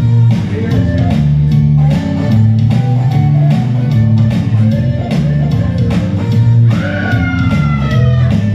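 Electric bass guitar playing a moving line of low notes through an amp over a steady beat, with a high bending note near the end.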